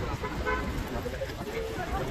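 Busy city street: crowd voices and a low traffic rumble, with a short horn-like toot about half a second in.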